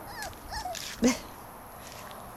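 A puppy whimpering in two short, wavering cries, then giving one sharp, louder yip about a second in.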